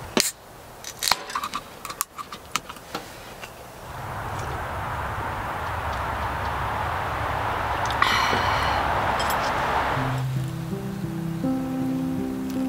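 An aluminium beer can is cracked open with a sharp click near the start, followed by a few smaller clicks from handling the can. A steady hiss then runs for several seconds, and acoustic guitar music comes in near the end.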